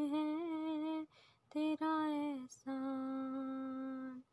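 Background song: a single high voice sings or hums long drawn-out notes without words. One phrase ends about a second in, a short phrase follows, and then one long note is held steady to the end.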